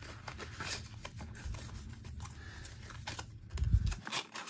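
Hands handling a leather wallet and its paper tags: faint rustling and small clicks, with a louder low thump near the end.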